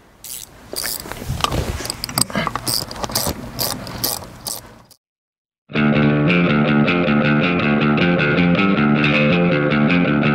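Irregular clicking and clatter of hand tools for about five seconds as work starts on removing a truck's bench seat, then a sudden cut to silence and rock music with guitar for the rest.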